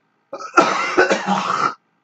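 A man coughing into his fist: one rough, throaty cough lasting about a second and a half.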